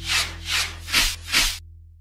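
Four quick whooshing swish sound effects about 0.4 s apart as an animated title logo appears, over a low held note of background music that fades out at the end.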